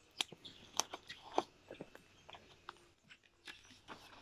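A paper picture book being opened and its pages turned by hand: a scatter of faint, sharp crackles and clicks from the cover and pages, the loudest about a second and a half in.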